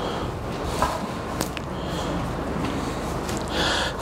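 Steady classroom room noise with a few faint clicks, then a man's short, audible intake of breath near the end.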